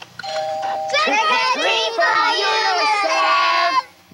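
A doorbell chime rings briefly at the start, then a group of children's voices call out together until near the end.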